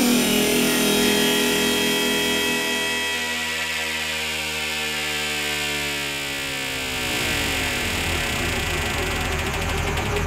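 Electronic bass music from a live DJ set: a sustained synthesizer tone that glides down in pitch. The deep bass drops out for a few seconds in the middle and comes back in about seven seconds in.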